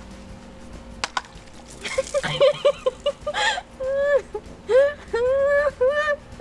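A single sharp click about a second in, then high-pitched giggling and squealing laughter from young women, in short rising and falling bursts.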